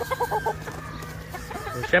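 Yellow-legged hatch gamefowl clucking: a few short clucks in the first half-second, then quieter, with a steady low hum underneath.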